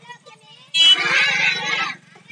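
A group of children shouting a slogan together in chorus, one loud call lasting about a second starting near the middle, over a steady low electrical buzz.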